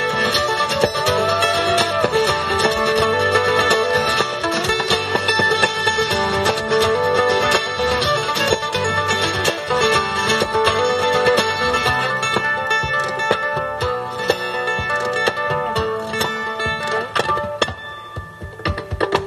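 Live instrumental string-band music: acoustic guitar strumming with other plucked strings. A few sliding notes come about a second in.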